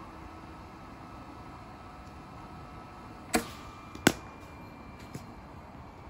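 A cricket ball edged off the bat: a sharp knock a little after three seconds in, then the louder crack of ball on bat under a second later, and a faint knock about a second after that.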